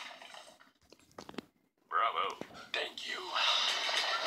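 About a second of near silence with a few faint clicks, then a voice speaking softly in short bursts.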